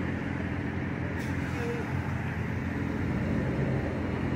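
Steady low hum of vehicle engines and road traffic outdoors.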